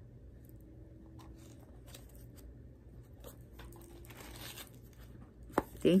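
Faint rustling and crinkling of handled paper and packaging, with a few soft clicks, over a low steady hum.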